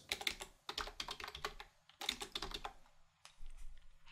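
Quiet typing on a computer keyboard: short runs of rapid key clicks with brief pauses, a few last keystrokes near the end.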